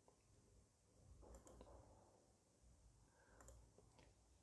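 Near silence with a few faint clicks of a computer mouse: a small cluster about a second and a half in and another near three and a half seconds.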